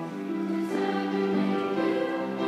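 A middle-school choir singing with music, holding long sustained chords that shift to a new chord about every second.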